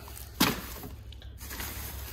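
A frozen food package set down in a chest freezer: one short knock with plastic rustle about half a second in, then quiet handling.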